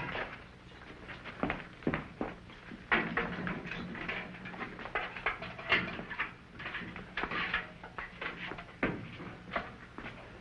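Irregular clicks, knocks and metallic rattles of a key working the lock of a barred jail-cell door and the door being handled, with the brightest rattles clustered a few seconds in and again near the middle and later.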